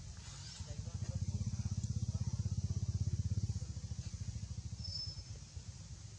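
An engine running, heard as a low, rapid, even pulsing that swells about a second in and eases after about three and a half seconds.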